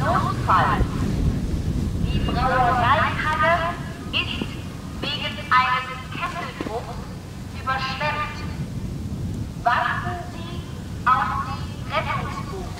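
A man's voice announcement played through a distant high-power horn loudspeaker, the Pass Medientechnik MH-360-4 'Streethailer'. It comes over thin and tinny, with no low end, in short phrases over a low rumble of wind on the microphone. It is clearly audible and really loud from about 200 metres.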